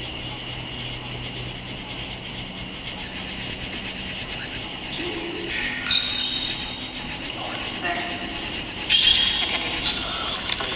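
Night insect chorus: crickets chirring steadily in several high-pitched bands. A few brief louder sounds come through about six and nine seconds in.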